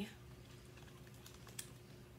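Faint clicks and taps from a picture book being handled and turned to face the camera, over low room tone; one slightly sharper click about one and a half seconds in.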